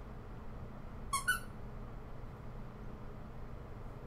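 A toy squeaker inside a plush pony, squeezed about a second in: two short high squeaks in quick succession, the second higher than the first.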